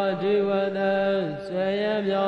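A monk's voice chanting Pali grammar text in slow, drawn-out recitation: long held notes, the first sliding down in pitch and breaking off about a second and a half in before the next begins.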